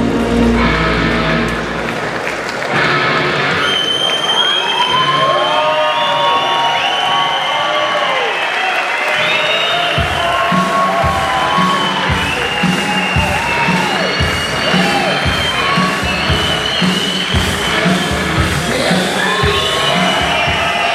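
Arena audience cheering and applauding after the posing music stops about two seconds in. About halfway through, new music with a steady beat starts, and the cheering carries on over it.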